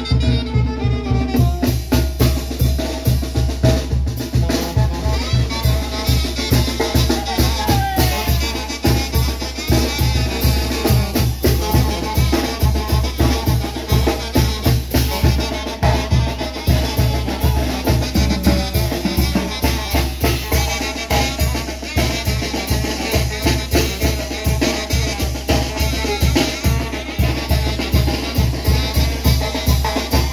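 A live tamborazo band playing: the tambora bass drum and snare-style timbales keep a fast, steady beat under the band's wind instruments.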